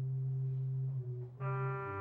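Organ music: held, steady chords with a low bass note, and a fuller, brighter chord coming in about one and a half seconds in.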